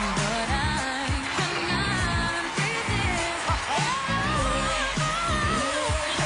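Pop song with a singing voice and a steady beat, played loudly over the arena's sound system.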